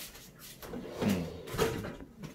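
Light knocks and rustles of handling, with a brief murmured voice about a second in.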